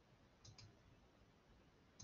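Near silence, broken by faint short clicks: a close pair about half a second in and another pair near the end.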